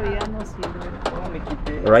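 A man talking. In a short pause between his words there are a few faint light clicks.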